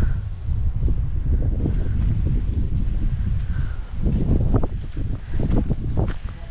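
Wind buffeting the microphone in open country: a steady, loud low rumble with no words over it.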